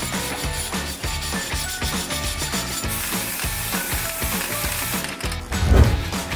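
Wire brush scrubbing rust off the face of a steel rear wheel hub, with background music.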